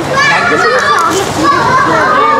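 Several high-pitched voices talking over one another, unclear chatter rather than clear speech.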